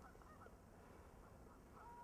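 Near silence: faint outdoor ambience with faint, short birdlike calls repeating every fraction of a second.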